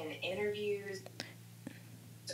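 Quiet, almost whispered speech for about the first second, then a faint steady hum with two small clicks.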